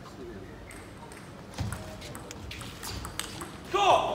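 Table tennis rally: the plastic ball clicks sharply off rackets and the table several times over the murmur of a hall crowd, ending in a short loud shout near the end as the point finishes.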